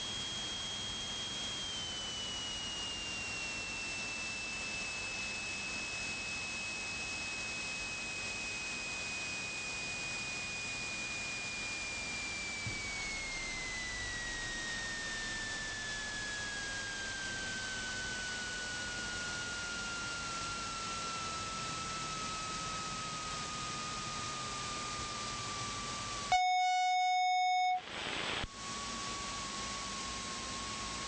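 Steady electrical whine in the aircraft's intercom audio over a constant hiss. It falls in pitch in steps as the engine is throttled back through the landing and rollout. Near the end a louder, flat buzzing tone sounds for about a second and a half and cuts off suddenly.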